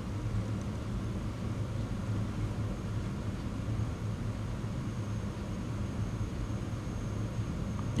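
Steady low hum with a faint, even hiss: the background room tone of a house interior, with no distinct events.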